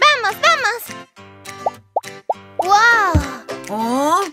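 Cartoon character voices making wordless, sliding exclamations over light children's background music, with three quick rising plop sound effects about halfway through.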